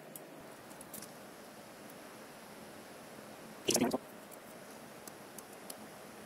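Faint steady whoosh of a desktop PC's air-cooling fans while the CPU starts a Cinebench render, with a few faint clicks. About four seconds in there is a brief vocal sound.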